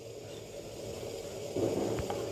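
Quiet steady background hiss, with a brief soft sound about one and a half seconds in.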